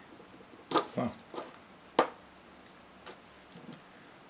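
A few sharp clicks and taps of metal multimeter probe tips touching the ends of loose 18650 lithium-ion cells as the voltages are checked, the sharpest about two seconds in.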